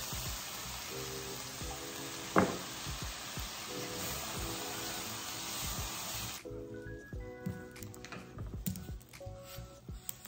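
Water poured into a hot skillet of browned ground beef, hissing and sizzling steadily, with one sharp knock about two seconds in; the sizzle dies down suddenly a little past halfway. Background music plays throughout.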